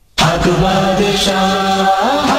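Devotional naat singing: voices chanting in a chorus, with one long held note, starting abruptly a fraction of a second in.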